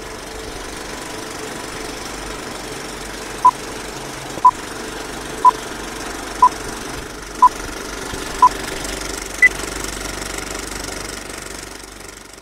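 Film projector sound effect with a steady clatter, under the beeps of a film countdown leader: six short beeps one a second, then one higher beep a second later.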